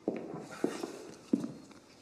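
Footsteps: three evenly spaced steps, about two-thirds of a second apart.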